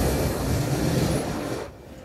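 Rumbling whoosh sound effect that swells in and holds, then dies away shortly before the end.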